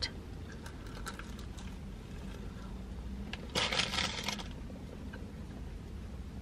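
A person biting into and chewing a hot breakfast sandwich, quietly, over a low steady hum inside a car. About three and a half seconds in comes a brief rustling burst that is the loudest sound.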